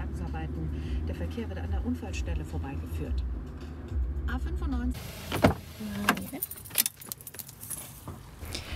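Steady low rumble of a car cabin on the move for about the first five seconds. Then a door opens onto the street, with a few sharp clicks and knocks and light metallic jingling.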